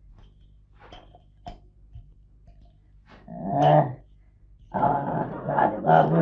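An old woman's gravelly grumbling vocal sounds: a short one about three seconds in, then a longer rasping one from about five seconds on. Before them come a few light taps of spice containers being handled.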